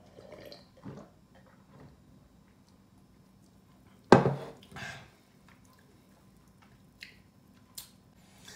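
Faint sipping and swallowing of a fizzy soda from a pewter tankard. About four seconds in comes a sudden loud sound, the tankard set down on the table together with a short throaty noise from the drinker, and two small clicks follow near the end.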